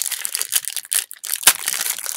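Foil wrapper of a trading-card pack crinkling and crackling as it is handled and pulled open. The loudest crackle comes about one and a half seconds in.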